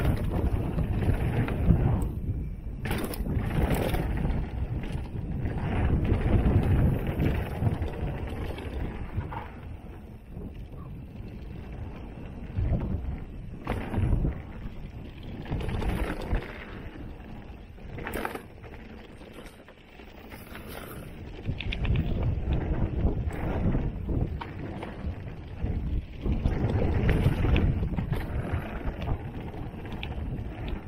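Mountain bike riding down a rocky dirt trail: wind buffeting the microphone and tyres rolling over dirt and leaves, with sharp knocks and clatter as the bike hits bumps and rocks. The noise eases briefly around ten seconds in and again around twenty seconds.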